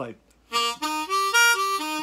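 A new Hohner Marine Band Deluxe diatonic harmonica played as single draw notes on its lower holes. It gives a short run of about six clear notes stepping up in pitch and then back down.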